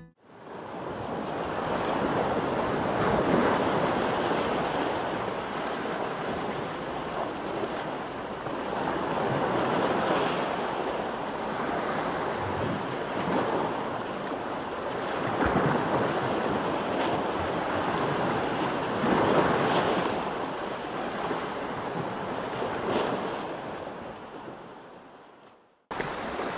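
Sea waves washing against a rocky shore, swelling and easing every few seconds, with wind blowing. The sound fades in at the start and fades out near the end.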